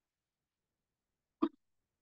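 Silence broken once, about a second and a half in, by a single short throat sound from the lecturer, a hiccup-like catch lasting a fraction of a second.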